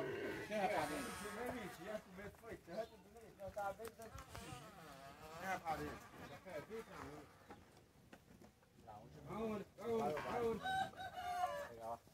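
A rooster crowing in the background, mixed with faint, indistinct voices.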